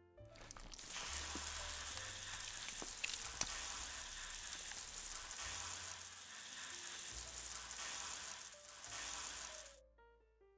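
Steady hiss of a water jet spraying from an ear irrigator into the ear canal, starting about half a second in and cutting off suddenly near the end, over background music.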